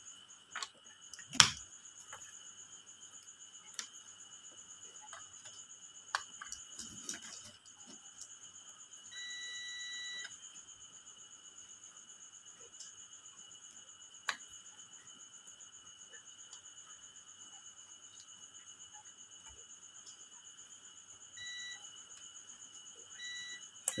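A sharp click about a second in. Then a digital multimeter's continuity buzzer beeps once for about a second near the middle, and twice briefly near the end, as the probes touch the transfer switch's breaker terminals: each beep signals a closed path through the contacts.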